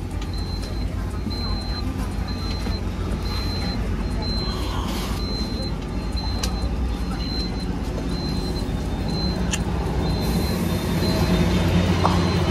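Airport apron bus running with a steady low engine rumble while its door warning beeps over and over, a short high tone about one and a half times a second, as passengers step off.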